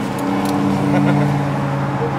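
An engine, like a motor vehicle's, running with a steady low hum that grows a little stronger near the end.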